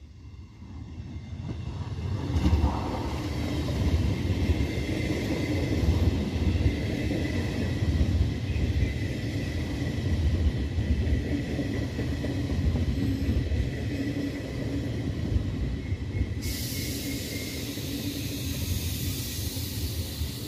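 Trenord push-pull regional train of MDVC coaches, pushed by electric locomotive E464 391, rolling past along the platform. The rumble of wheels on the rails builds over the first two seconds and then holds steady, with a higher hiss joining about sixteen seconds in.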